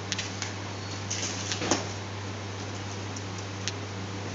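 Hydraulic pump motor of an automatic concrete cube compression testing machine running with a steady low hum while it loads a 150 mm cube at a controlled rate of 7 kN per second. A few faint clicks sound over the hum.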